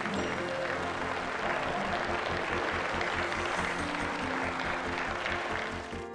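Sustained applause from a chamber full of lawmakers, steady throughout, with background music playing underneath.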